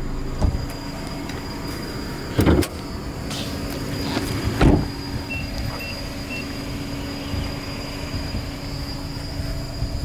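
Nissan Sylphy 1.6 four-cylinder petrol engine idling steadily. Two heavy thumps come about two and a half and four and a half seconds in, followed by three short high beeps.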